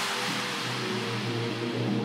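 Electronic techno track in a quieter, drumless passage: a high wash of noise fades out over steady sustained synth tones, with no kick or bass hits.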